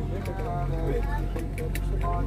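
A man's melodic Arabic recitation, with long held notes, playing over the steady low hum of an airliner cabin.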